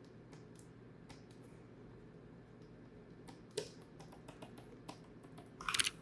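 Computer keyboard keys clicking faintly and sparsely over a low steady hum, with a louder quick run of key presses near the end as shortcuts are entered.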